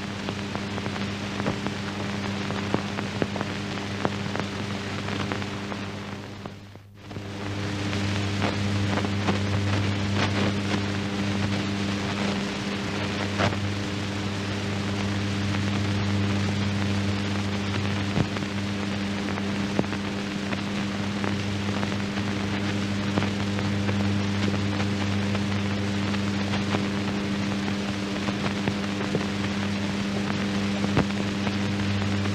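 Background noise of an old 1940s film soundtrack: a steady hum under hiss with scattered faint crackles. It drops away briefly about seven seconds in, then comes back.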